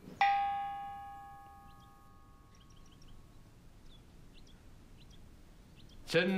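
A single bell-like chime struck once, ringing clearly and fading away over about two seconds.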